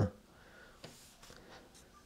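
Near silence: room tone after a voice trails off, with a faint tick a little under a second in and a few smaller ones after.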